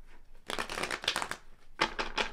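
A tarot deck being shuffled by hand: a dense run of rapid card-edge flicks lasting nearly a second, then a few sharp clicks of the cards near the end.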